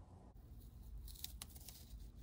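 Faint peeling and crinkling of a small vinyl decal's backing paper and clear transfer film, with a couple of brief crackles about a second in.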